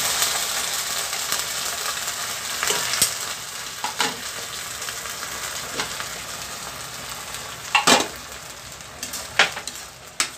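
Sliced onion, garlic and canned sardines sizzling in oil in a metal wok, the sizzle slowly dying down. A few sharp metal knocks against the wok come through it, the loudest a double knock near the end.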